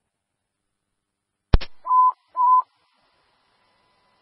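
A fire-department radio channel: a sharp key-up click, then two short beeps, each about a third of a second.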